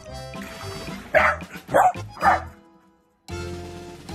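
A tricolour corgi barking three times in quick succession, short sharp barks over background music.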